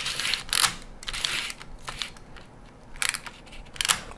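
Mamiya 6 rangefinder's film advance lever worked in a few short strokes, its mechanism clicking and rasping as the 120 film's backing paper winds onto the take-up spool.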